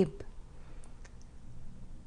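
A pause in speech: quiet room tone with a few faint, short clicks.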